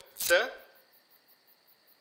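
A man says "sir" once, then only a faint, steady high drone of crickets is left.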